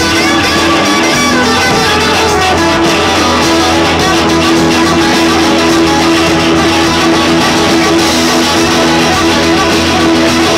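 Rock band playing an instrumental passage live, with several electric guitars sounding together over the band. The guitars hold steady sustained notes, loud throughout.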